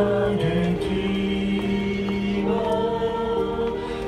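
A small group of voices singing a hymn together in slow, long held notes.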